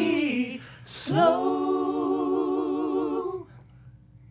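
Women singing a cappella. A phrase ends, then comes a short hiss about a second in. A long held note with vibrato follows and stops about three and a half seconds in.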